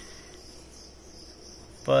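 Crickets chirring steadily in a high, thin band, growing a little stronger about a third of the way in; a man's voice starts right at the end.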